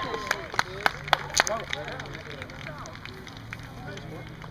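Rugby players and spectators calling and talking faintly at a distance, with a few sharp clicks in the first second and a half and a steady low hum underneath.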